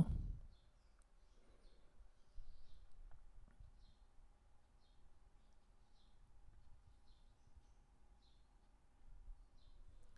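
Quiet room tone: a faint low rumble and a faint steady hum, with scattered short, faint high chirps and a soft click or two.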